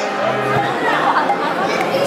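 Many people talking at once: crowd chatter with overlapping voices.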